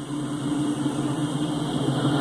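Diesel locomotives of an approaching freight train, a steady low engine drone that grows gradually louder.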